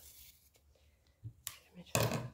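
Faint rustle of thread being drawn through ribbon by hand with a sewing needle, followed by a sharp click about one and a half seconds in.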